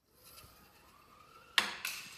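LEGO zipline rider running down a taut string with a faint, slightly rising whir, then two sharp plastic clacks about one and a half seconds in, close together, as it reaches the bottom of the line.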